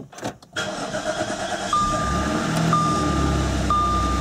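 Audi S4's supercharged 3.0-litre V6 starting and settling into a steady idle on its first start after an oil change and refill. From a couple of seconds in, a dashboard warning chime sounds about once a second over the idle.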